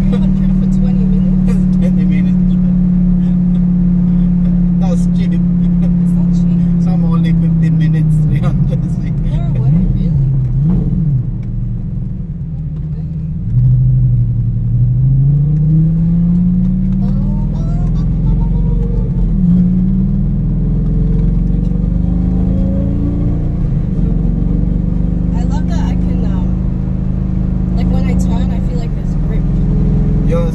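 Lamborghini engine heard from inside the cabin: a steady drone while cruising, then its pitch falls and wavers as the car slows. About halfway through it gets louder and its pitch rises as the car accelerates, with a second short rise a few seconds later.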